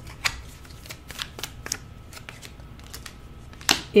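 Tarot cards being handled and drawn from the deck: a scattering of soft card clicks and slides, with a sharper one just before the end as a card is laid on the spread.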